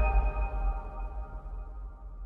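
Logo sting: a sustained electronic chord with a high ringing tone over a deep low rumble, all slowly fading away.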